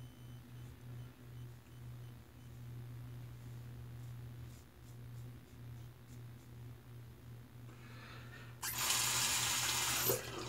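Bathroom sink tap turned on and running for about a second and a half near the end. Before it, a few faint strokes of a safety razor through lather.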